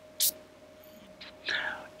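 A man's breath sounds in a pause in his talk: a short hiss about a quarter second in, and a breath in near the end before he speaks again, over a faint steady hum.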